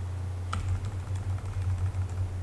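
Computer keyboard keys clicking, several separate keystrokes at an uneven pace, backspacing text out of a search box. A steady low hum runs underneath.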